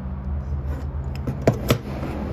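Aluminum T-slot extrusions being handled: a few faint scrapes and ticks as the end fastener slides along the channel, then two sharp metallic clicks about a fifth of a second apart as the joined pieces knock together and are set down on the table.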